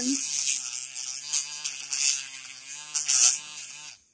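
BellaHoot pen-style electric nail drill running with an emery bit, shaping an artificial nail tip. A steady motor hum with a hissy grinding that comes and goes as the bit meets the nail, then it cuts off suddenly just before the end.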